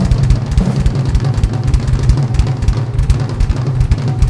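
Live metal drum solo on a double-bass-drum kit: fast, steady kick drum strokes driving under snare hits and a continuous wash of cymbals, played loud.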